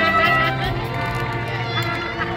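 High school marching band playing, brass and woodwinds holding sustained chords; a low bass note comes in about a quarter second in and holds.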